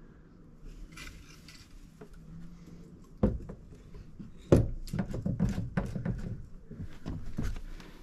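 A fishing rod being set back into its rod holder on a kayak: handling rustle, then knocks and light rattles, the sharpest about four and a half seconds in.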